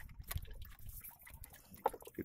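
Water lapping and dripping against a small boat's hull, with scattered light clicks.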